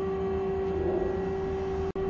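Steady machine hum of a CNC lathe standing at idle: one held tone with fainter overtones over a low drone, unchanging, with a brief dropout just before the end.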